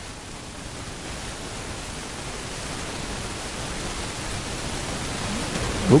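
Steady, even background hiss of room noise with no speech, slowly growing louder.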